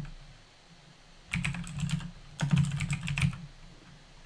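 Typing on a computer keyboard: two short runs of keystrokes, the first starting about a second and a half in and the second about a second later, as two words are typed into a text editor.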